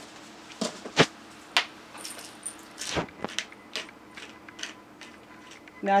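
Scattered sharp metallic clicks and knocks of a hand potato masher against a stainless steel mixing bowl as boiled potatoes and sweet potato are mashed and seasoned. The loudest knock comes about a second in.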